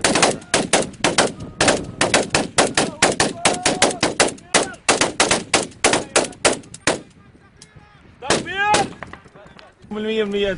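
Rapid automatic small-arms gunfire, many sharp shots in quick irregular bursts, that stops about seven seconds in. Near the end a man shouts briefly.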